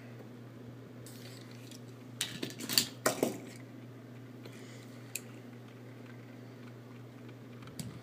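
Light clicks and rustles of die-cast toy cars being handled, with a cluster of sharp clinks a couple of seconds in and a single click about five seconds in, over a low steady hum.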